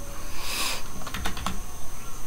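A few computer keyboard clicks in quick succession a little past a second in, after a brief hiss about half a second in.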